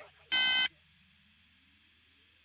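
One last electronic beep, a short buzzy tone of several pitches at once, sounds about half a second in as the end of a repeating beep pattern that closes the track. After it only a faint steady hiss remains.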